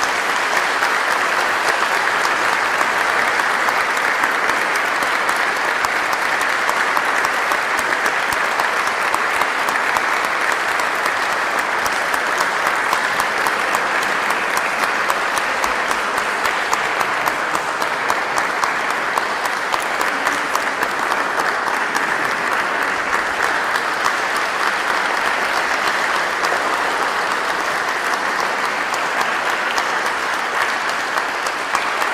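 Audience applauding steadily at the end of a choir's piece, a dense, even clapping that goes on without a break.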